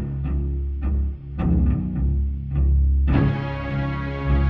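Heavy rock instrumental passage: a low, sustained bass with scattered drum hits, the sound turning fuller and brighter a little after three seconds in.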